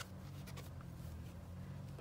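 Faint rustling and light scratching of acrylic yarn being drawn and worked with a crochet hook, with a few small ticks about half a second in, over a low steady hum.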